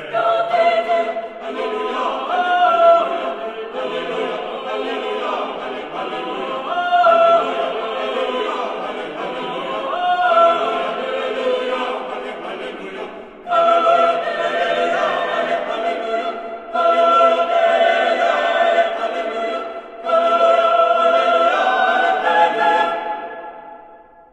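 Mixed-voice chamber choir singing sustained chords in phrases, with a loud fresh entry about halfway through. Near the end the final chord dies away.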